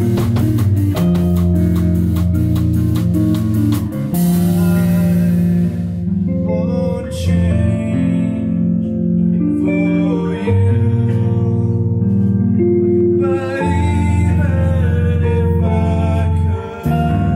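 Indie rock band playing live: electric guitar and bass over a drum kit. The drums hit fast and steady for about four seconds, then one crash rings out, leaving held guitar and bass notes with lighter drumming.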